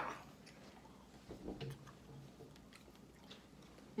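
A person chewing a bite of beef jerky, faint, with scattered small mouth clicks.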